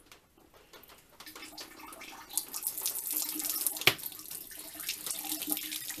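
Water from a PEX rainwater line running out of a twisted-open SharkBite fitting into a sink basin. It starts as a faint trickle about a second in, swells over the next two seconds into a steady splashing stream, and there is one sharp click near the four-second mark.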